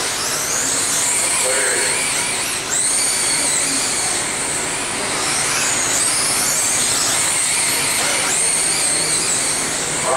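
Electric motors of 1/10-scale RC sprint cars racing on a dirt oval, a high whine that rises and falls again and again as the drivers throttle down the straights and lift through the turns.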